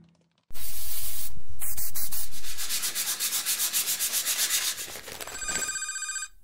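Abrasive sanding sound of jewellery work: a loud rasp, steady for about two seconds, then in quick strokes about six a second. Near the end a telephone starts ringing.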